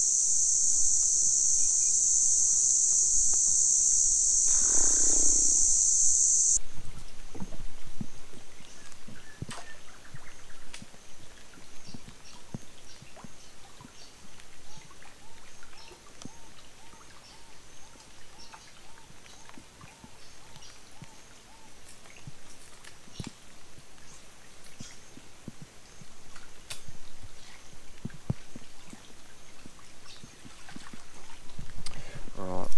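A loud, high, steady insect buzz that cuts off abruptly about six seconds in, with a brief lower-pitched call near five seconds. After it comes quieter open-air sound with scattered light clicks and faint high chirps.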